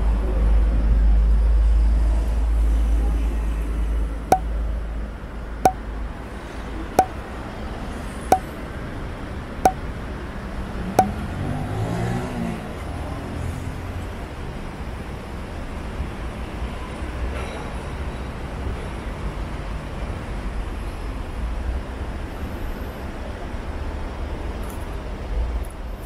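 Street traffic with a heavy low rumble in the first few seconds, then six short sharp ticks a little over a second apart, then steady traffic noise.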